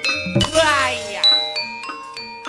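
Javanese gamelan accompaniment for a wayang kulit fight scene: struck bronze metallophones and gongs ringing, cut through by sharp clanks of the dalang's metal kepyak plates. About half a second in, a voice cry rises and then falls in pitch over the music.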